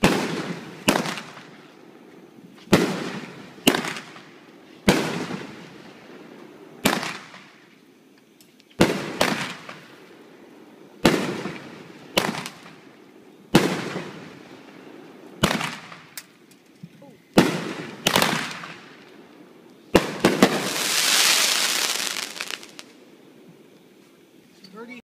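Aerial fireworks bursting one after another, a sharp bang every second or two, each trailing off in a fading echo. Near the end a dense hiss lasts about two and a half seconds.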